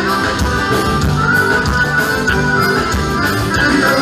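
Live band playing an instrumental passage of gaúcho dance music, with accordion, guitar and drums over a steady beat.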